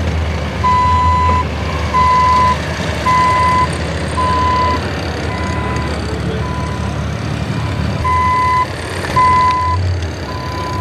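Reversing alarm beeping about once a second, each a single steady tone about half a second long, over the low, steady rumble of idling engines.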